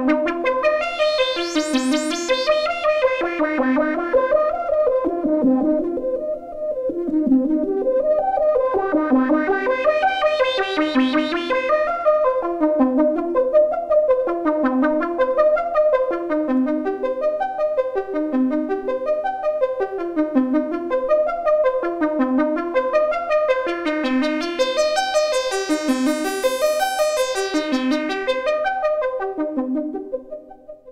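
Analog modular synthesizer: two oscillators through a Q107A state-variable filter's low-pass output, playing a repeating pattern of notes about one a second, each shaped by an envelope on the filter. The filter knobs are turned by hand, so the tone grows bright and buzzy three times (near the start, about a third of the way in and near the end) and turns dull and mellow in between.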